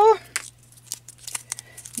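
A small plastic prize capsule being popped open and handled: a few light plastic clicks and crinkles, spaced irregularly.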